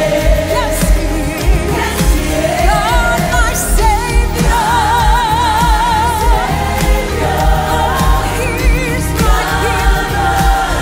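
Live worship song: a lead singer with a group of backing vocalists over a band with a steady beat, singing "God my savior, God my healer", with vibrato on the long held notes.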